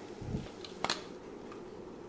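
Induction hob humming low and steady under a quiet kitchen, with a soft low thump just after the start and a single sharp click just under a second in.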